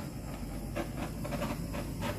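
Handheld torch flame running with a steady hiss, played over a wet acrylic pour to pop bubbles in the paint.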